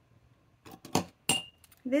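Pens being handled and set down on a desk: a few sharp clicks and clinks, one of them ringing briefly. A spoken word follows at the end.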